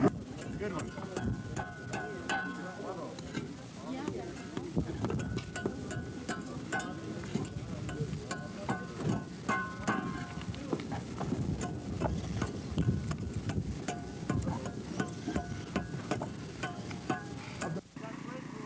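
Irregular taps and knocks of masons working mud bricks on an adobe arch, with faint voices in the background.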